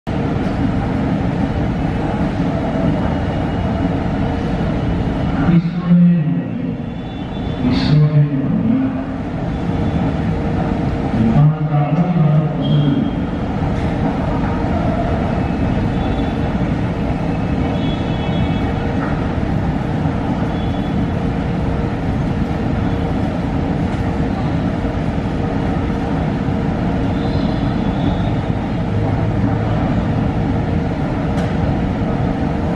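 Steady rumble of a metro station underground, with people's voices; a few louder bursts of speech come in the first dozen seconds.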